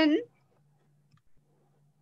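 A woman's voice finishes a word, then it goes quiet except for a faint steady low hum and a couple of faint clicks about a second in.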